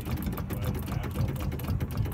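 Rapid, steady mechanical rattle from a Piper Cherokee's nose-gear fork shimmying, over a steady low rumble.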